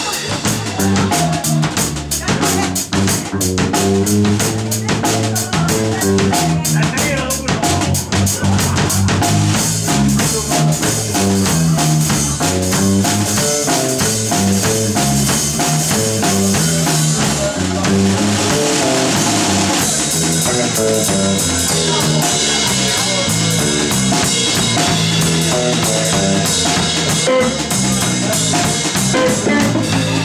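Live blues-rock band playing an instrumental passage: electric guitar, electric bass and drum kit. The drums run in rapid strokes through the first half, and the guitar comes forward about two-thirds of the way through.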